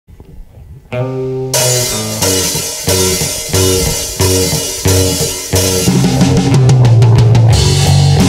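Rock band playing a song's intro on electric guitar, bass and drum kit. A chord sounds about a second in, then the band hits accented chords with cymbals about every two-thirds of a second, and breaks into steady driving playing near the end.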